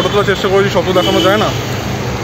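A man speaking over a steady background hum of street traffic.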